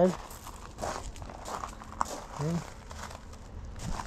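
Footsteps crunching on gravel: a run of short, uneven crunches, with one sharp click about two seconds in.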